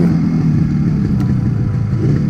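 1974 Yamaha RD350's air-cooled two-stroke parallel-twin engine running steadily while the bike is ridden, its pitch sinking slowly as the revs ease off.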